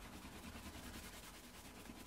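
Faint steady rubbing of a canvas cloth over veg-tan leather: the grain is being burnished with gum tragacanth to build a worn patina.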